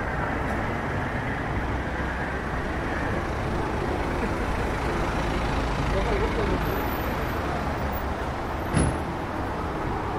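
Town-centre street ambience: a steady rumble of car traffic, with faint voices of passers-by and one short sharp knock near the end.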